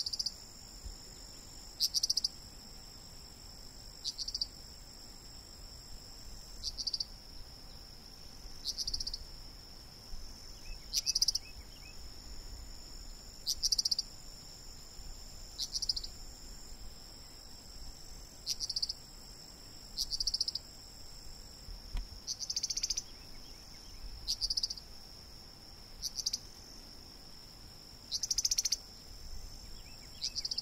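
Steady high-pitched insect chorus, with short buzzy chirps that recur about every two seconds.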